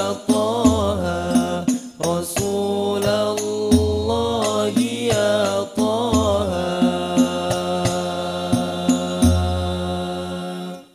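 Al-Banjari sholawat: several male voices sing a devotional melody into microphones over frame drums beating a steady rhythm with deep booming bass strokes. From a little past halfway, the voices hold one long note.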